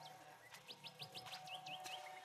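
Faint birdsong: a quick run of about five short rising chirps a little under a second in, followed by a few shorter hooked notes, over a soft, steady held music note.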